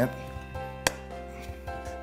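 A single sharp snap about a second in: quarter-inch plate glass breaking along a freshly scored circle line. Background music with held, sustained tones plays throughout.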